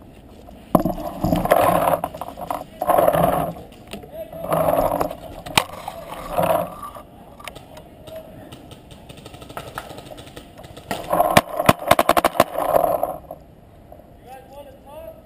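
Paintball marker shots: a few sharp pops midway, then a quick string of about ten pops near the end. Between them come bursts of rustling, scraping movement noise.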